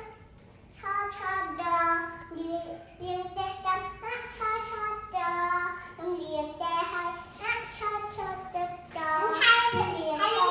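Young girls singing a song in held notes that step up and down. The singing starts about a second in and grows louder near the end.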